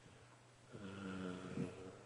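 A man's drawn-out hesitation hum, held at a steady pitch for about a second in the middle of a pause in his talk.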